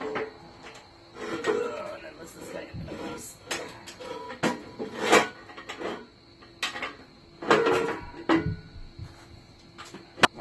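Metal blower housing and impeller clanking, knocking and scraping against the leaf blower's frame and engine as they are lifted and worked into position over the crankshaft. There are a dozen or so separate knocks of varying loudness, the loudest about five seconds in and again between seven and a half and eight and a half seconds.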